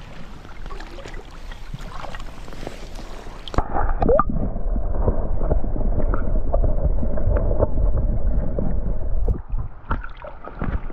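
Stream water running over the surface; about three and a half seconds in the sound turns muffled and louder, a dull underwater rush of fast current with scattered knocks, heard from below the surface.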